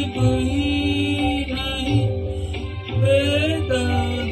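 A Hindi film song sung by a man over a karaoke-style backing track, with sustained melody lines and a soft low beat about once a second.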